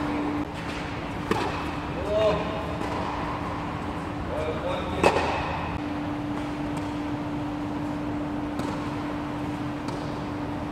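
Tennis ball struck by a racket in practice rallying: two sharp hits about four seconds apart, the second louder. Short voice calls come between the hits, over a steady low hum that drops out early and returns in the second half.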